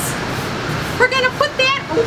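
A steady background noise, with a high-pitched voice giving a few short, pitch-bending vocal sounds without clear words in the second half.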